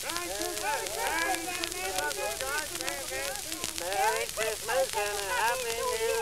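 Several voices talking and calling over one another, with a laugh about midway, on an old recording full of crackle and hiss.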